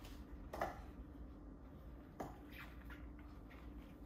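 Faint kitchen food-prep sounds: two soft knocks about a second and a half apart, the first the louder, followed by a few lighter ticks.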